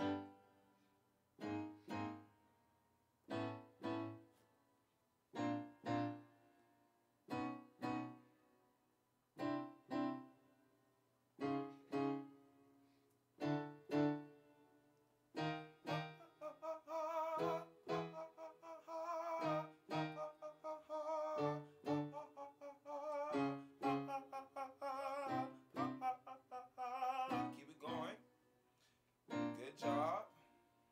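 Yamaha Motif XS8 keyboard playing piano-voice chords for a vocal warm-up, struck in pairs about every two seconds, each decaying. From about halfway a man sings over the chords on 'ha' with a wide vibrato, and the chords come faster.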